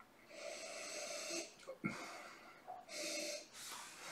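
A man sniffing whisky from a Glencairn glass held at his nose, about four soft breaths in and out through nose and open mouth.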